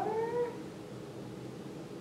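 A woman's voice drawing out the end of a word, rising in pitch for about half a second, then steady room tone.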